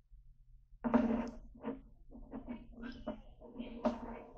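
Close handling noise right at the recorders: rustling and light knocks as objects are moved about by hand, starting suddenly about a second in and going on in short uneven bursts.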